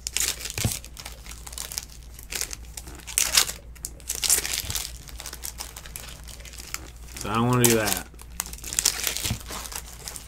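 Foil wrappers of trading-card packs crinkling and tearing as they are ripped open by hand, in repeated short rustles. About seven seconds in, a brief hum-like voice sound rises and falls in pitch.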